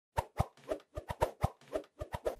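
A quick, uneven run of about a dozen short pops, coming faster toward the end.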